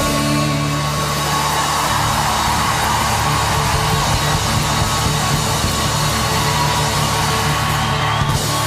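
Live band holding out the final chord of a song while the crowd cheers and claps over it.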